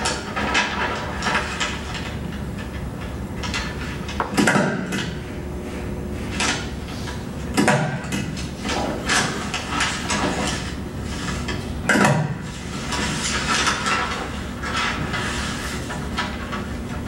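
A film soundtrack heard through room speakers: sheets of paper and transparencies being handled and slid across a table, with short knocks and rustles and three louder strikes, over a steady low hum.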